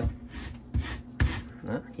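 Peeled cassava root rasped against a handheld stainless steel rasp grater: about three scraping strokes, roughly half a second apart.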